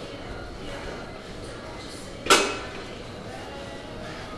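A single sharp metallic clank of gym weights striking metal about two seconds in, ringing briefly before dying away, over steady gym room noise.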